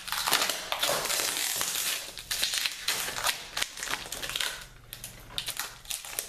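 Thin plastic sheeting crinkling and crackling in irregular bouts as a cured epoxy-and-sprinkle disc is pulled free of the wooden ring and plastic it was cast in, with a few sharper clicks near the end.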